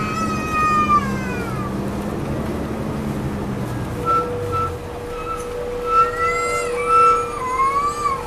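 Inside an MCI D4000 coach: the low drone of its Detroit Diesel Series 60 engine falls away about halfway through as the bus slows, and its brakes squeal in high-pitched whines, one long squeal at the start and several short ones near the end as it comes to a stop.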